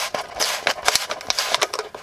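Fingers picking and scraping at the paper cone and glued voice-coil area at the centre of a 10-inch woofer, a quick run of irregular crackles and scratchy clicks.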